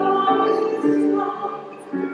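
Hymn singing by many voices with instrumental accompaniment, moving through held chords. It is the offertory hymn of the service.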